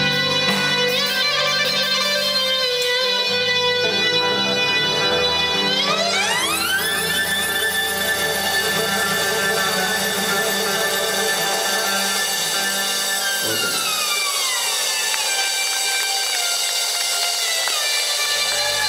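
Live rock band ending a song: sustained, overdriven instrument tones with no clear drumbeat. They sweep up in pitch about six seconds in, hold, and then slowly slide down and thin out near the end.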